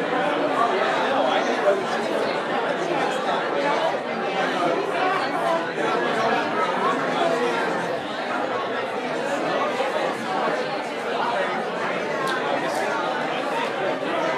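Many overlapping voices of a congregation chatting at once, a steady hubbub of people greeting one another with no single voice standing out.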